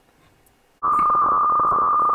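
HF radio weather fax signal on 4610 kHz, received by a software-defined radio and played as audio: a steady whistling tone over radio hiss that comes in suddenly a little under a second in.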